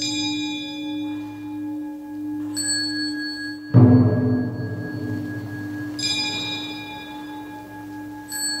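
Buddhist temple bells struck in a slow sequence to lead prostrations. A bright metal bell rings out at the start and again about six seconds in, a higher, lighter strike comes about two and a half seconds in, and the loudest, heaviest low strike falls just under four seconds in, all over a steady low hum of ringing metal.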